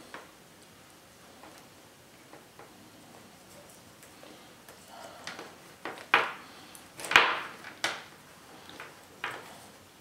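Handling noise of a plastic extension-cord plug and multimeter probe leads on a wooden tabletop: quiet at first, then about seven short, sharp clicks and knocks in the second half, the loudest a little after seven seconds in.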